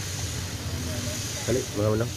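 Steady high-pitched hiss over a low hum, with no distinct clicks or knocks; a single spoken word comes near the end.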